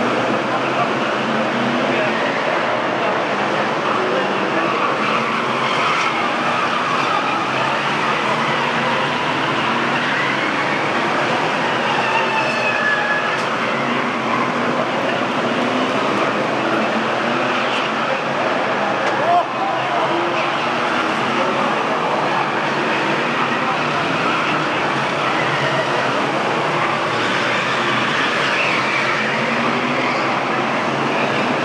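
A pack of Formula 1 stock car engines running steadily around an oval track, their pitches rising and falling as the cars pass. There is a single brief knock about two-thirds of the way through.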